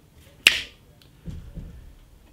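A single sharp click about half a second in, dying away quickly, followed by a quieter low sound a little under a second later.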